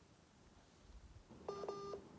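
A short electronic beep over a telephone line, about half a second long, coming about one and a half seconds in after a faint, quiet line.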